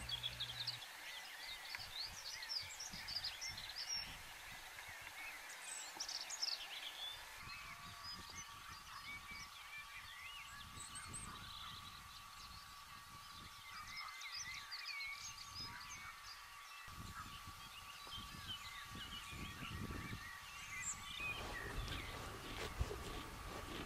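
Outdoor birdsong: many small chirps and trills from several birds, faint and scattered throughout. A faint steady high whine joins about seven seconds in.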